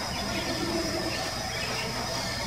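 Steady high-pitched insect drone, with a faint low hooting from an Amazonian motmot (Momotus momota) about half a second to a second in.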